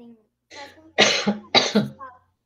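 A person coughing: two loud, harsh coughs about half a second apart, with a softer one just before them.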